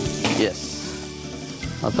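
Fried ingredients sizzling in a kadhai over a high gas flame.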